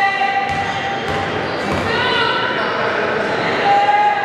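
Basketball gym noise during a free throw: voices calling out across the hall, with a basketball bouncing on the court.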